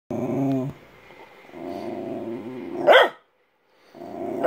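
A schnauzer growling in two stretches, the second ending in one sharp, loud bark about three seconds in.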